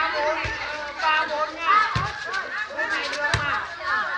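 Several women's voices chattering and calling out at once, overlapping, with a few dull thumps among them.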